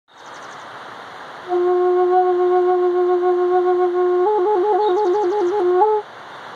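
A flute holding one long low note, then trilling rapidly between that note and the one just above it, ending on the upper note.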